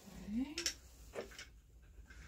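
A short rising hum of a voice, then a few light, sharp wooden clicks from a floor loom as a boat shuttle is handled between picks.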